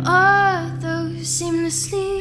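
Solo female voice singing live over an acoustic guitar: a held note that swells up and falls back in pitch, then a few shorter sung notes, with guitar chords ringing underneath.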